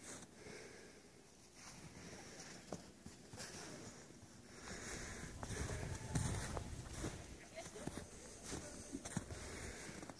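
Faint footsteps crunching in snow, with soft rustling.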